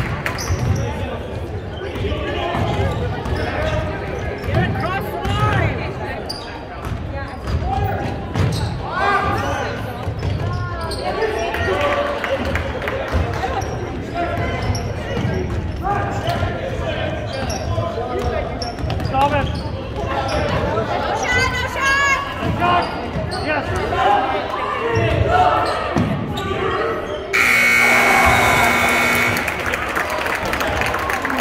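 Basketball dribbling on a hardwood gym floor amid players' and spectators' voices echoing in the gym. About three seconds before the end, the scoreboard horn sounds steadily as the game clock runs out, ending the quarter.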